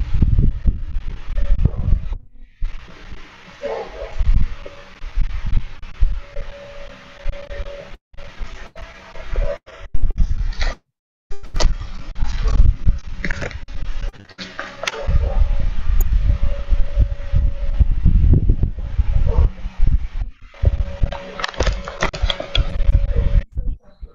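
Noisy interference from a participant's open microphone on a video call: a loud low rumble and crackle with a recurring steady hum, briefly cutting out to silence several times.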